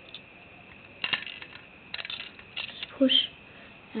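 Plastic Lego pieces clicking and rattling as the toy trailer is handled: a few sharp clicks, one about a second in and a small cluster around the two-second mark.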